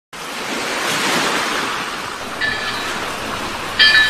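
Ocean surf sound effect, a wash of noise that swells over the first second or so, with two bright ringing tones laid over it, one about two and a half seconds in and a louder one near the end.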